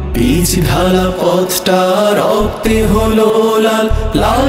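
A male vocal group chanting in harmony over a steady low drone, with a few sharp percussive hits.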